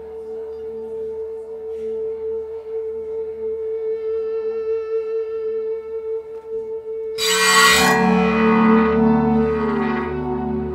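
Instrumental song intro played live on guitars: a single held note sustains and swells slowly louder, and about seven seconds in a loud ringing chord comes in over it. Near the end the held note slides slightly down in pitch.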